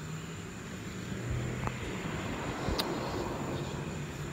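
A passing engine, a low drone that swells a little in the middle and eases off toward the end, with a couple of faint clicks.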